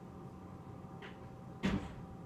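A kitchen cupboard door shut with a single short knock, a faint click coming just before it.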